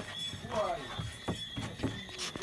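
A faint voice in the background and a few light knocks as a plywood box is handled in a car's cargo area.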